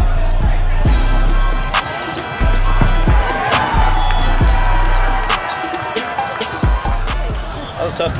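Indoor volleyball rally in a large, echoing hall: repeated sharp hits of the ball and players' shoes on the court, with voices calling. A background music track with a deep bass line plays over it.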